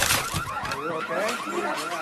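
A fast-warbling electronic alarm tone, rising and falling about eight to ten times a second, starting about half a second in, with faint voices under it.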